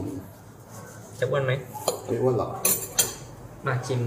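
Steel knife and fork scraping and clinking against a ceramic plate while cutting through a crisp croissant, with one sharper clink about two-thirds of the way through.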